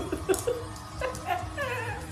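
A dog making a series of short, high calls that slide up and down in pitch, with music playing underneath.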